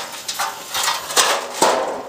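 A run of about five sharp metal knocks and clanks, roughly two a second, as the steel case and copper parts of an old Airco DC welder are handled while it is taken apart.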